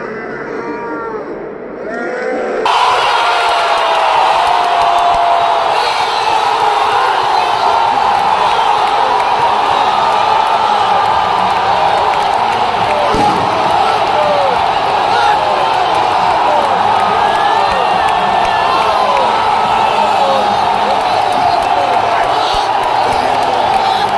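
Football stadium crowd erupting into loud cheering and shouting about three seconds in, as fans celebrate a goal, then keeping up a sustained roar with single voices yelling over it.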